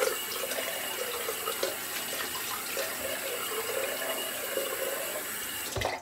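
Bathroom sink tap running in a steady stream, cutting off just before the end.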